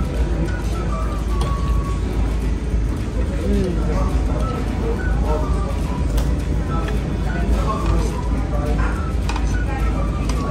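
Busy dining-room background: a steady low rumble with faint music and murmured voices, and a few light clicks.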